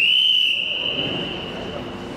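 Referee's whistle blown in one long blast of about two seconds, starting sharply and fading away, signalling the end of a wrestling bout. A low murmur of voices in a sports hall lies beneath it.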